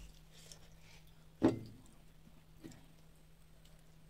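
A dull thump on a wooden table as a small glass bowl of curry is handled, with a softer knock about a second later. A steady low hum runs underneath.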